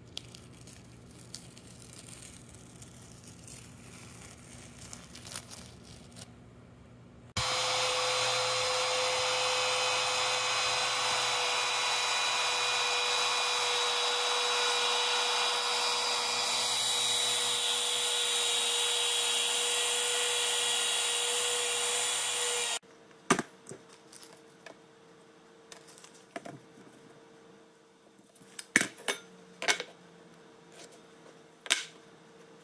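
Compact router running steadily with a constant whine as it cuts grooves into an MDF sheet along a guide rail. It starts abruptly about seven seconds in and cuts off abruptly about fifteen seconds later.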